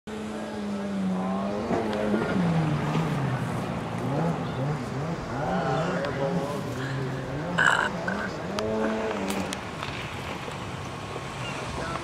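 An engine revving up and down over and over, its pitch rising and falling a little under twice a second, over steady background noise. A brief high-pitched sound cuts in about two-thirds of the way through.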